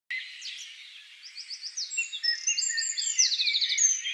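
Several songbirds singing at once, with overlapping chirps and quick trills of evenly repeated notes that grow louder after the first second and a half.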